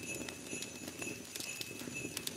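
Quiet horse hooves clip-clopping in an irregular run of small clicks, over a steady high ringing, like a sleigh-ride sound effect.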